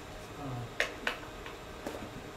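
Three sharp clicks, two close together about a second in and a third near the end, preceded by a brief low hum, over the steady hum of the room.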